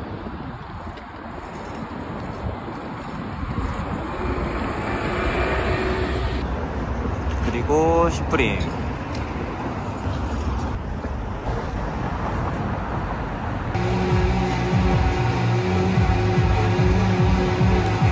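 Street traffic: cars passing and running engines. About eight seconds in there is a short rising pitched sound, and in the last few seconds a steadier hum comes in.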